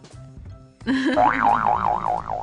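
Quiet background music, then about a second in a loud cartoon-style boing sound effect: a warbling tone that wobbles up and down about four times a second over a low note.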